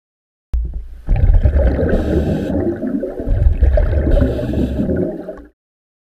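Underwater bubbling and gurgling rumble, with two short hissing bursts about two seconds apart. It starts abruptly and cuts off just before the end.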